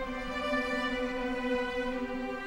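Orchestral film score: a string section of violins and cellos holding slow, sustained chords.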